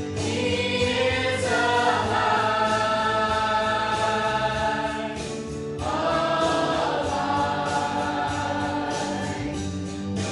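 Mixed church choir singing a gospel song in long held phrases, with a brief break about six seconds in before the next phrase begins.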